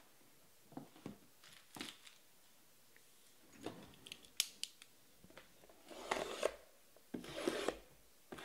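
Plastic shrink wrap on a sealed box of trading cards being handled and cut: scattered light clicks and scrapes, then two longer rustling tears in the last two seconds.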